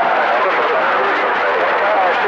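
CB radio receiver on channel 28 picking up skip: a steady hiss of static with a weak, garbled voice breaking through.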